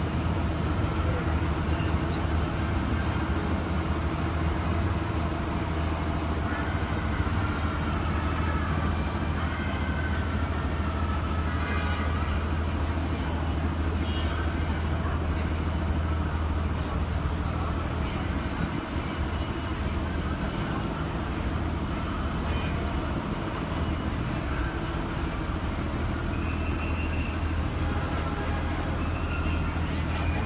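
City street traffic: a steady low engine hum from vehicles idling and passing, which fades somewhat past the middle, with scattered voices of passers-by and a brief higher tone near the end.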